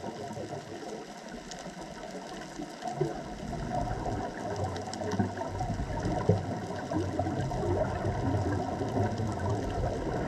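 Underwater reef ambience picked up through a camera housing: a steady low rumble that grows louder about three seconds in, with faint scattered crackling over it.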